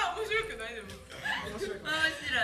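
A small group of young adults chuckling and laughing, with snatches of talk.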